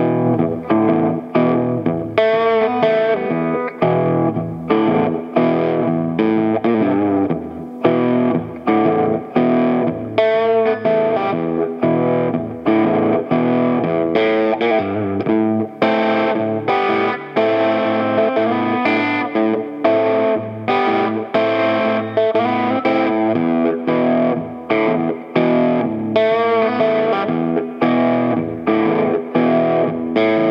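Telecaster-style electric guitar with a little distortion, fingerpicked: a swung blues riff over a steady thumbed bass, in E minor moving to A minor and back, played at a slowed tempo.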